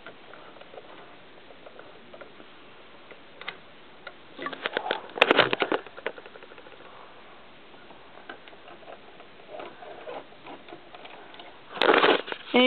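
Light clicks and rattles of plastic Lego pieces being handled, with a denser run of clicks about halfway through and a louder clatter just before the end.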